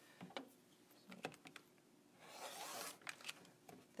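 Quiet handling sounds of quilting tools on a cutting mat: light clicks and taps of an acrylic ruler and rotary cutter, with one brief scraping swish lasting under a second about two seconds in.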